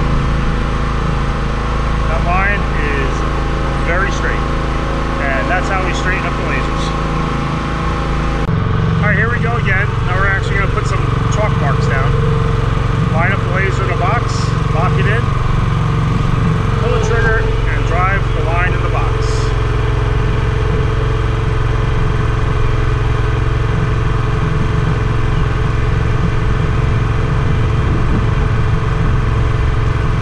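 The gasoline engine of a Graco line striper running steadily at close range; its note shifts abruptly about eight seconds in.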